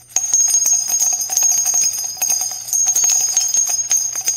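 Small jingle bells shaken in a fast, continuous jingle, starting a moment in, as an end-screen sound effect.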